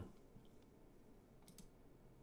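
Near silence: room tone, with two faint clicks close together about one and a half seconds in.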